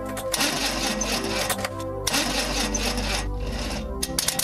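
A car's starter motor cranking the engine over and over without it catching, as a failing battery gives out, with music underneath.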